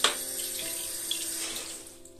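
Handheld shower head spraying water onto a tiled shower floor, with a sharp knock right at the start. The spray hiss drops off near the end.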